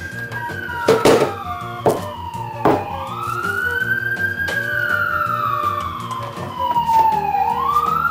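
A siren wailing, its pitch sweeping slowly up and down over several seconds. A few sharp knocks in the first three seconds come as glass beer bottles are set down on the counter.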